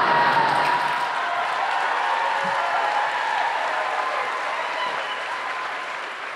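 Audience applauding, loudest at the start and slowly fading toward the end.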